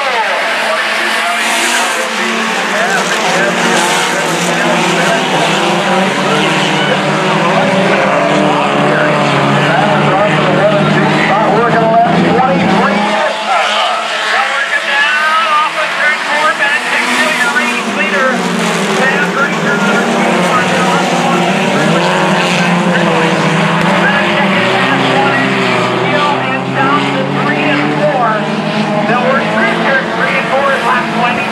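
A field of sport compact dirt-track race cars running together, several four-cylinder engines overlapping, their notes rising and falling as they work through the turns.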